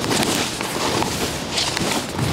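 Skis scraping over snow in turns down a steep run, an uneven rushing noise that swells and fades.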